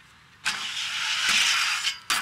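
Aggressive inline skates grinding down a metal stair handrail: a sudden hit about half a second in, then a continuous hissing metal scrape that grows louder for about a second and a half and stops just before the end.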